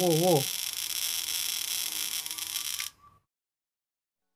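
A man's voice chanting "oh, oh" with a wavering pitch, ending about half a second in. It sits over a loud steady hiss that cuts off suddenly about three seconds in, leaving silence.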